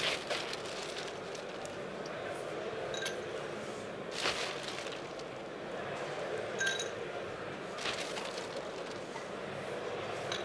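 Ice cubes clinking and rattling as they are scooped into a glass mixing glass: a few separate clinks, one with a short glassy ring about two-thirds of the way through, over the steady hum of a large hall.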